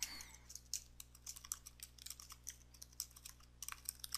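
Computer keyboard keys clicking faintly in a quick, irregular run of keystrokes as a word is typed.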